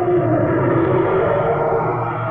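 Sound-effect roar of a Giganotosaurus: one long, drawn-out roar with a slowly wavering pitch.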